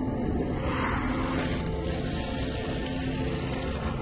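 A steady, low rumbling drone with a few sustained tones held through it: ominous horror-film score and sound design under a tense scene.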